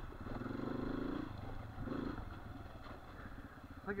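Dirt bike engine running at low revs as the bike rolls slowly along the trail, the engine note swelling briefly near the start and again about two seconds in.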